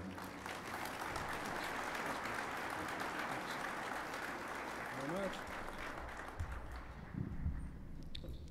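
Audience applauding steadily for several seconds, dying away near the end.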